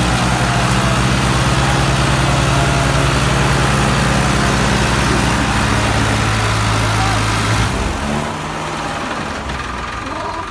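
Tractor diesel engine running hard with a steady note while it tries to drag its sand-laden trolley out of deep sand. About eight seconds in, the revs drop and the engine settles to a quieter, lower running note.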